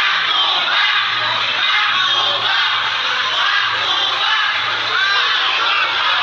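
A large, densely packed crowd of excited fans cheering and shouting all at once, many voices overlapping into one loud, unbroken din.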